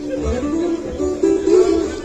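Acoustic guitar and fiddle playing an instrumental tune live through a PA: the fiddle carries a melody with slides between notes over the guitar's rhythm, with a steady low beat of about three a second.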